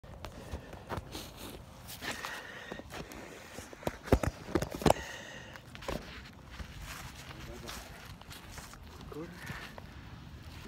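Close handling noise as boxing gloves are pulled on with a phone held in hand: rustling and fumbling, with a cluster of sharp knocks about four to five seconds in.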